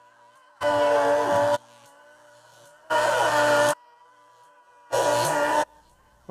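Electric guitar played loud through a Marshall amp, heard in three short blasts of under a second each. Between the blasts it drops to a faint trace, the same playing muffled almost to nothing by the studio's sound isolation.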